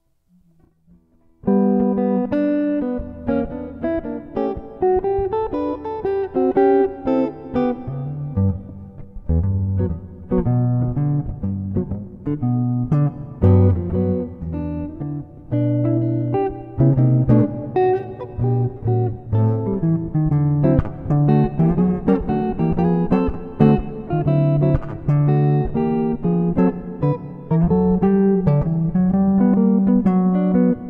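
D'Angelico Premier SS semi-hollowbody electric guitar, strung up for jazz, played solo fingerstyle with chords over bass notes. It begins about a second and a half in, with no backing track.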